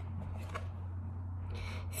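A thick cardboard page of a picture book being turned, a soft rustle near the end, over a steady low hum.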